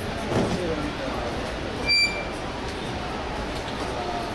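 An XOR folding electric scooter being folded by hand: a low clunk about half a second in, then a short, sharp high-pitched ping about two seconds in as the frame folds, over background voices.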